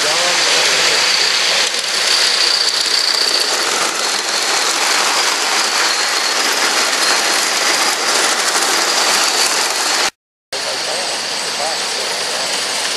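Live-steam model train running past close by on its ground-level track: a steady rushing, rattling noise of the train and its wheels on the rails. The sound drops out briefly near the end at a cut, then the train is heard again.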